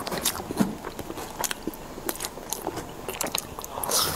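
Close-miked mouth sounds of a person eating grilled vegetable skewers: chewing and biting with many short wet clicks and smacks, and a louder bite near the end.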